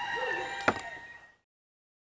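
A rooster crowing in the background, with a single sharp knock about a third of the way in; then the sound is cut off to silence.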